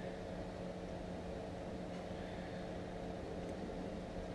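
Steady low hum with a faint hiss: background room noise, with no distinct handling sounds.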